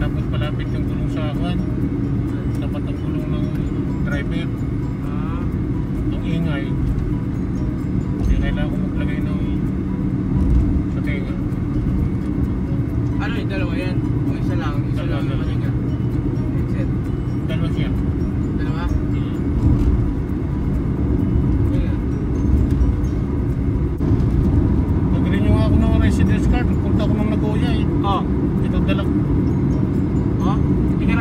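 Steady low rumble of road and engine noise inside a moving car's cabin, with voices coming and going over it.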